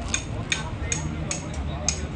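A run of short, sharp clinks with a bright ringing edge, about two or three a second, over a low background rumble.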